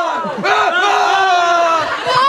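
Men's voices crying out in loud, drawn-out wails: a short cry, then one long wail that slowly falls in pitch. It is the exaggerated mock anguish of a staged death scene.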